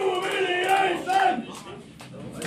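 Concert crowd shouting a chant in unison, in repeated phrases, fading off near the end.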